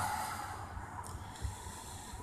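Low, steady rumble inside a car's cabin while it crawls along in stop-and-go traffic: engine and road noise heard from the driver's seat.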